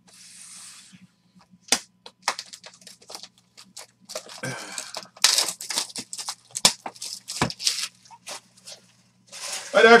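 A sealed box of baseball cards being unwrapped: the wrapping tears and crinkles in a run of irregular crackles and rips.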